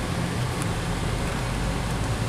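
Steady low drone of a Chevrolet Vectra's engine and tyres heard from inside its cabin while driving on the road.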